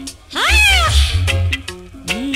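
Reggae record playing, bass and beat, with a long cat-like meow about half a second in that rises and then falls in pitch.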